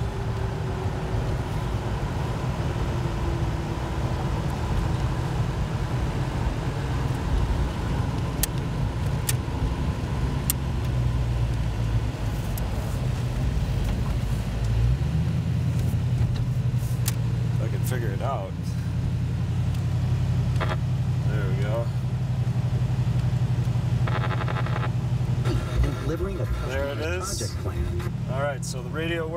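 Engine and road noise inside the cabin of a 1937 Ford five-window coupe hot rod on the move: a steady low rumble that shifts in character about halfway through.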